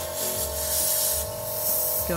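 Airbrush spraying paint onto a fishing lure in two short hissing bursts, the first about a second long and the second shorter, near the end. Steady background music with a held tone plays underneath.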